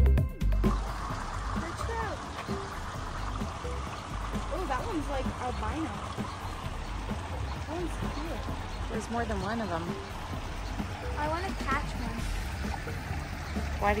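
Steady flow of water through a concrete trout raceway, an even splashing rush, with voices chattering faintly over it. A music track with drums cuts off in the first half second.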